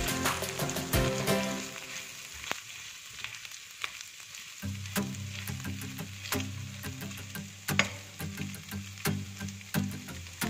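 Diced carrots sizzling in hot oil in a nonstick wok, with the spatula scraping and clicking against the pan as they are stirred. Background music plays alongside, dropping out for a couple of seconds in the middle.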